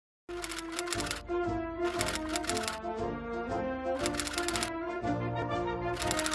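Instrumental theme music with held notes, overlaid with bursts of typewriter key clatter as a sound effect. The clatter comes four times, each burst under a second long, about every two seconds. It all starts suddenly just after the start.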